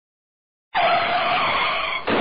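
Car tyres screeching in a skid, a high, loud, wavering squeal that starts suddenly out of silence just under a second in.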